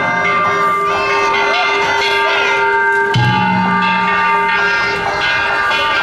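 Danjiri festival float's hand-struck metal gongs (kane) ringing on and on, their tones overlapping, with crew voices calling out over them.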